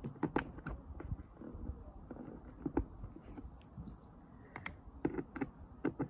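Light, irregular clicks and taps of small screws and a screwdriver against the plastic housing of a backpack sprayer as the pump's mounting screws are put in. A short, falling bird chirp comes about three and a half seconds in.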